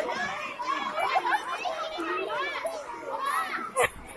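A crowd of children talking and shouting over one another, with one sharp knock shortly before the end.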